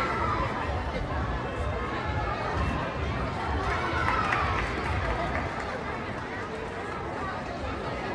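Crowd of spectators chattering indistinctly over a steady low rumble, with no single voice standing out.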